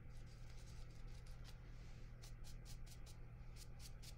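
Watercolour brush bristles scrubbing and swirling paint in a palette well. The swishes are faint and quick, about six a second, and come in clusters in the second half, over a low steady hum.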